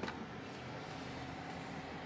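Steady whir of a running desktop PC's cooling fans, with a single keyboard key click at the very start.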